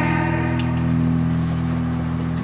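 Acoustic guitar chord left ringing, held steady and slowly fading.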